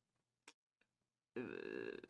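Near silence, then, about a second and a half in, a man's drawn-out 'uhh' held at a steady low pitch: a hesitation sound while he searches for his next words.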